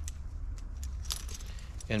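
Metal climbing hardware on a harness clinking as a carabiner is handled: a few light, separate metallic clinks.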